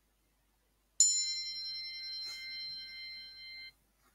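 A single bell-like chime struck once about a second in, ringing with several high overtones and fading for under three seconds before cutting off abruptly: a timer's alert marking the end of the six-minute writing period.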